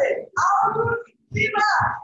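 A person's voice calling out in drawn-out phrases, two of them back to back, each under a second long.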